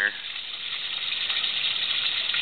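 Steady rush of water pouring into a koi pond, the flow from the pond filter's return lines.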